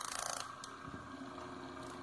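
Small indoor-unit (evaporator) fan motor driven from the inverter board, running faintly with a steady hum, with a brief rustle of handling in the first half-second.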